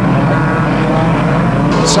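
Engines of a field of banger race cars running together around the track, a steady mix of engine noise.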